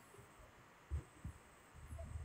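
Quiet pause with a short, dull low thump about a second in, a weaker one just after, and low muffled rumbling near the end.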